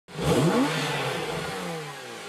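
Car engine revving sound effect: it starts suddenly with a quick rise in pitch, then falls away and fades.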